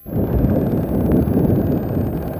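Wind buffeting the microphone: a loud, steady low rumble with no distinct tones, cutting in abruptly at the start.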